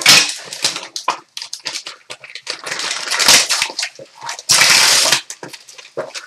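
Gold metallic foil wrapping being torn and crumpled off a box, in irregular crinkly bursts, with one longer, louder tear about four and a half seconds in.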